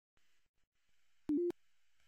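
Faint hiss, then about halfway through a short two-note electronic beep, the second note a little higher than the first, with a click at its start and end.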